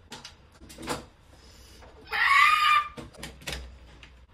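Handling noise as an LED ring light is brought in and set up: a few light knocks and clicks, and about halfway through a squeaky scrape lasting roughly a second.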